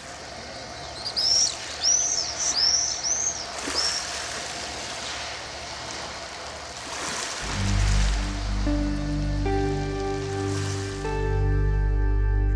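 A small bird chirping, a handful of quick arching chirps in the first few seconds, over a soft steady outdoor ambience. About seven seconds in, slow ambient music starts with a low drone and sustained notes.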